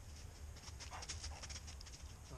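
Faint rustling and a quick run of light clicks, over a low steady rumble of wind on the microphone.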